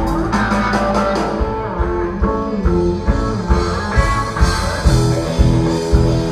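Rock band playing live without vocals: electric guitar lines over electric bass and drum kit.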